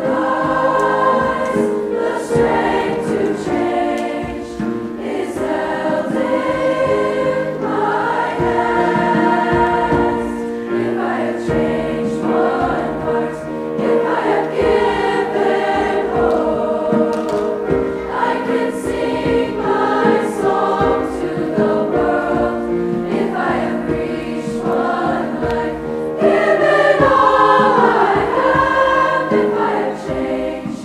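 Large combined SSA (treble-voice) high-school choir singing in parts, with piano accompaniment and a hand drum. The sound swells louder a few seconds before the end.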